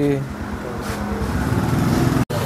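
A motor engine running steadily with a rough, pulsing sound, growing louder toward the end, just after a man's last words.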